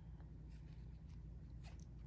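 Faint rustling and light scratches of a steel crochet hook and cotton thread as double crochet stitches are worked, over a low steady hum.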